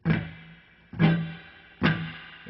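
A semi-hollow electric guitar chord strummed three times, roughly a second apart, each strum left to ring and fade before the next.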